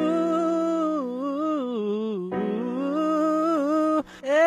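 A male voice singing a wordless melody in long held notes that bend up and down, with a short break a little past two seconds in, over a steady low sustained note.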